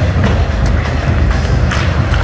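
Loud, bass-heavy music over an arena's sound system, with a few sharp clacks of pucks and sticks on the ice.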